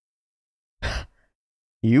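A man's short breath out into a close microphone, about a second in, lasting only a fraction of a second; he starts to speak near the end.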